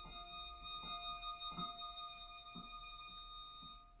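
Violin and digital piano improvising: the violin holds one long high note while the keyboard plays soft single notes about once a second. The held note stops just before the end.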